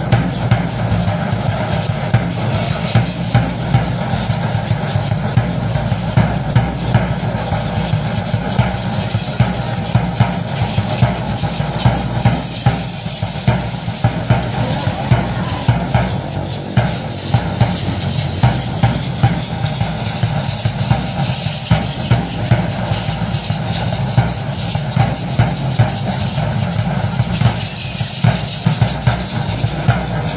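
Drum beating a steady dance rhythm, about two beats a second, for a danza de pluma, with a high held tone joining about two-thirds of the way through.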